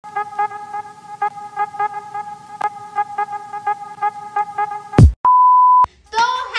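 Added intro sound effects: a steady humming tone broken by short clicks about four times a second, then a loud thump about five seconds in, followed by a single pure half-second beep like a censor bleep.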